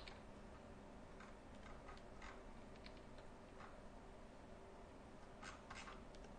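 Near silence with a few faint, scattered clicks of computer keys, two slightly louder ones close together near the end.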